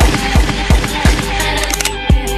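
Hip-hop track with four gunshot sound effects fired in rhythm over the beat, about three a second, in place of a sung word.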